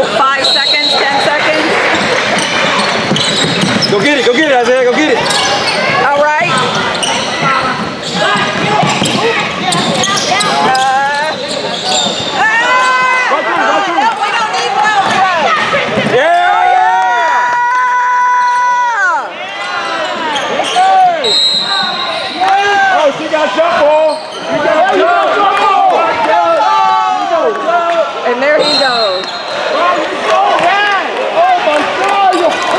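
Indoor basketball game on a hardwood court: the ball dribbling and sneakers squeaking on the floor, with voices of players and onlookers. Midway a steady buzzer-like tone sounds for about three seconds, and short high whistle blasts come near the start, about two-thirds through and near the end.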